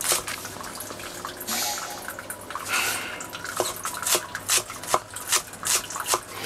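A Chinese cleaver slicing spring onions on a wooden chopping board, a run of sharp knocks as the blade meets the board, coming at uneven intervals.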